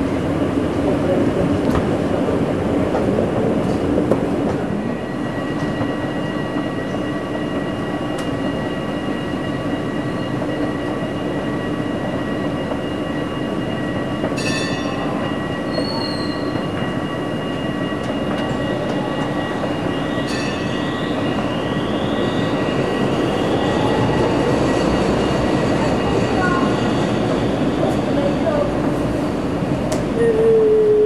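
Escalators in an underground rail station running steadily, a low mechanical hum with several thin steady tones over it. Two short high sounds come about midway, and rising whines follow a little later.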